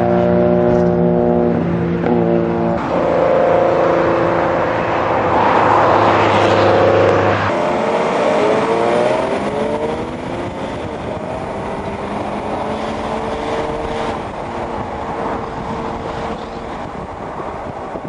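Classic rally cars' engines running on the road: a steady engine note for the first several seconds, then a pitch that rises and falls as a car revs past. The sound eases slightly in the second half.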